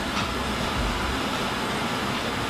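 Steady rushing machine noise with a low rumble, as from commercial kitchen equipment running.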